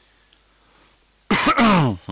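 A man clearing his throat once, a loud harsh burst that falls in pitch, coming after about a second of near silence.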